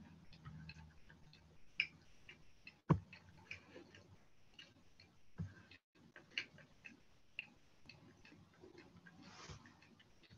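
Faint, irregular small clicks and ticks over quiet room tone, with one sharper click about three seconds in and another about five and a half seconds in.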